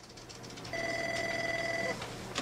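Electronic desk telephone ringing: one steady electronic ring tone a little over a second long, starting under a second in and stopping just before the handset is reached, over a low steady hum.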